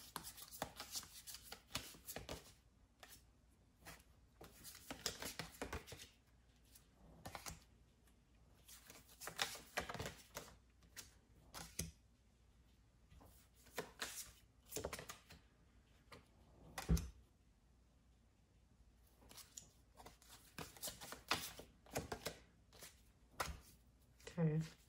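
Tarot cards being handled and shuffled on a cloth-covered table: faint, irregular rustles and flicks of card stock, with one louder knock about two-thirds of the way through.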